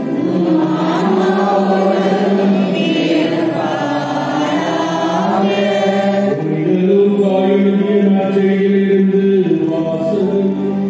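Liturgical chant sung by voices, long held notes that move in steps from one pitch to the next.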